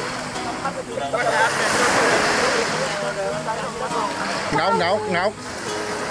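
Shallow seawater washing and splashing around people wading knee-deep, under voices calling to each other, with a loud call near the end.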